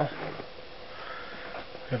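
Quiet room with a faint steady hum and a soft breath in through the nose about a second in, between spoken phrases.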